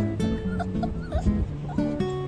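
Pomeranian puppy whimpering in several short whines, over background music.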